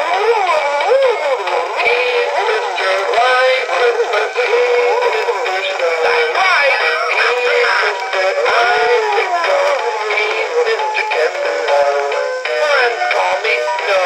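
A 2007 Gemmy Mini Snowflake Spinning Snowman animated toy playing its song through its built-in speaker: a thin, bass-less novelty tune with a character voice, opening with a laugh.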